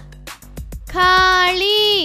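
Children's background music with a steady beat, and from about halfway through a high, child-like voice chanting the Telugu word 'khaali' in two long, drawn-out syllables, the second falling off at the end.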